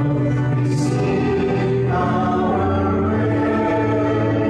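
Church choir singing a sacred piece during Mass, voices holding long sustained notes.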